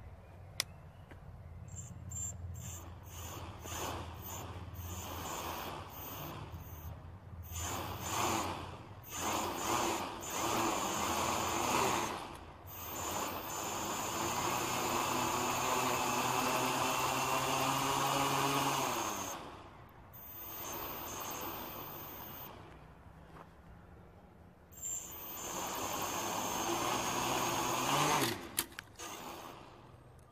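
The brushless motors (Racerstar BR2212 1000KV) of a quadcopter with 10-inch props spin up in repeated throttle bursts, their whine rising and falling, with the longest and loudest run in the middle. One motor does not spin like the other three, which the builder puts down to its ESC not being flashed with SimonK firmware. Near the end the whine falls away and a few sharp clicks follow as the frame tips over.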